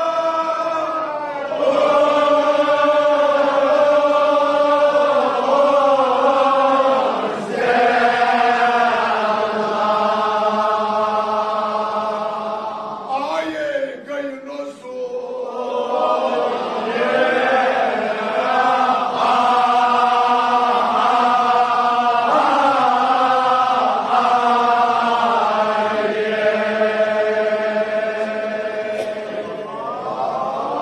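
Men's voices chanting a Kashmiri marsiya, an elegy of Shia mourning, in long drawn-out held notes, phrase after phrase of several seconds each, with a short break about halfway.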